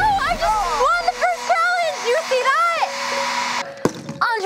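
Hair dryer blowing steadily, with excited whoops and shouts over it; the dryer cuts off abruptly near the end.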